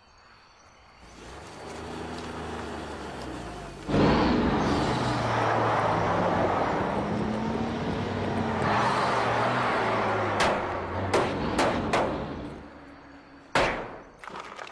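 Large fire-truck engine building up from quiet, then running loud and revving, its pitch rising and falling, as the truck charges. Several sharp knocks come about two-thirds of the way through, and there is a loud hit just before the end.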